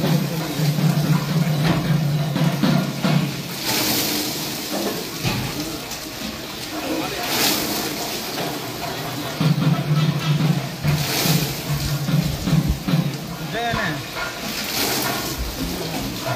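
Water poured from vessels splashing down over a large stone Nandi statue in surges every three to four seconds, under a steady background of voices.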